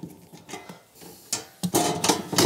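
Dishwasher's lower front cover being worked loose and pulled off by hand: quiet handling at first, then a sharp click about a second and a half in and a short clatter with a little ringing near the end.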